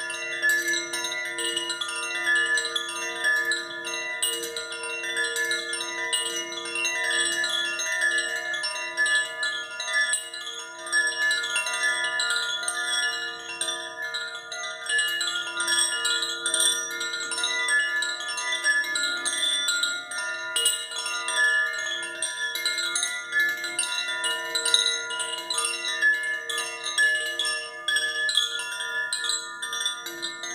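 A handheld heart chakra wind chime, a green tube with a hanging clapper and sail, swung by its cord so the clapper keeps striking it. It rings continuously as a blend of several sustained tones, with quick tinkling strikes all the way through.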